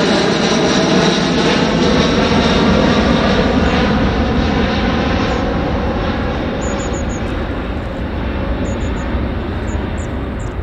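Douglas DC-8's four turbofan engines at climb power as the jet climbs away after takeoff: a broad, steady rumble that is loudest in the first half and slowly fades from about halfway as the aircraft recedes.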